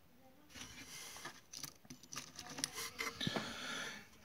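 Rummaging through a box of ammunition: a rapid patter of light clicks and rustling as cartridges and cartridge boxes are handled, starting about half a second in.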